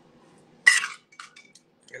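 One sharp clink as a drinking tumbler and its plastic lid are handled and set against a stone countertop, followed by a few lighter clicks and taps.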